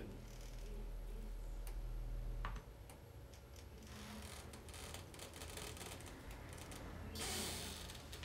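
Deep, steady hum of tactile vibration transducers fixed to a recliner's legs, playing a low tone that cuts off suddenly about two and a half seconds in. Faint scattered clicks follow, then a brief loud rustle near the end as a person gets up from the chair.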